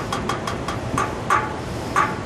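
Steady outdoor city background noise with distant traffic, and a run of short sharp clicks, several in quick succession at first and then more spaced out.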